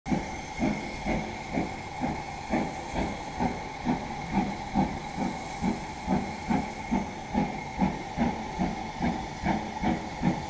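Steam locomotive exhaust beating evenly about twice a second over a steady hiss of steam. The engine is BR Standard Class 5 73082 Camelot, a two-cylinder 4-6-0, arriving at slow speed.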